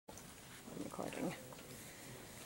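A person's brief, faint voice sounds about a second in, over the steady hum of a large room.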